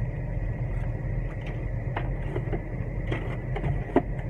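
Plastic blister packaging and shopping items being handled: scattered light clicks and rustles, with one sharp click just before the end, over a steady low hum inside a parked car.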